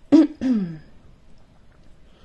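A woman coughing and clearing her throat: two quick sounds in the first second, the second falling in pitch.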